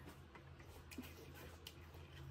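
Faint eating sounds from a person eating soaked rice by hand: a few soft clicks of chewing and lips, over a steady low hum.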